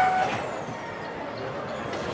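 Amusement-park kiddie train ride: a short horn toot right at the start that cuts off, then a steady rushing noise as the ride train runs along its track.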